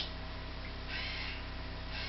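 A steady low electrical hum, with a brief faint harsh sound about a second in.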